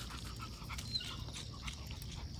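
A dog panting faintly, over a steady high-pitched hum in the background.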